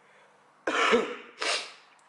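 A man clearing his throat in two short, rough coughs, about 0.7 s apart, starting a little over half a second in; he has a head cold.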